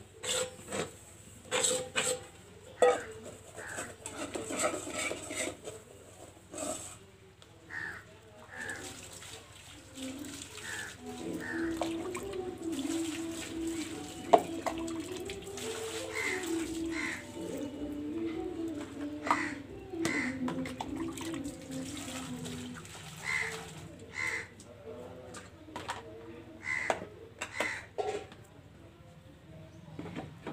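Stainless steel bowls and plates clinking and clattering as they are scrubbed and rinsed by hand, with water splashing and pouring. Crows caw now and then.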